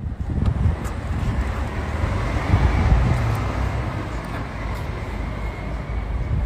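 A Rolls-Royce SUV pulling away and driving off across a parking lot, heard as a steady low rumble of engine and tyres. Wind buffets the phone's microphone throughout, and the sound swells briefly about halfway through.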